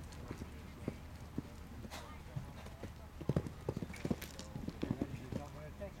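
Hoofbeats of a horse cantering on a sand arena surface: a run of irregular thuds and clicks, thickest about three to four seconds in.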